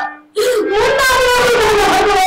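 A high singing voice in Bayalata folk-theatre style holds one long, wavering wail that slowly falls in pitch, starting after a brief pause at the very beginning.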